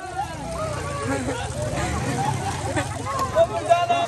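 A low motor-vehicle engine rumble, steady through most of the clip and fading near the end, under people talking and crowd chatter.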